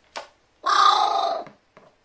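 A pet carrion crow giving one drawn-out call, about a second long and the loudest thing here. A sharp click comes just before it.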